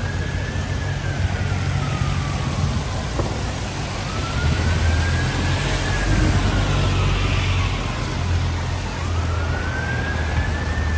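An emergency vehicle's siren in a slow wail, rising and falling about every four seconds, heard faintly over the low rumble of city traffic. A double-decker bus engine is running close by on the wet street.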